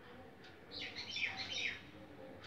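A small bird chirping: a quick run of short high chirps lasting about a second, starting a little under a second in.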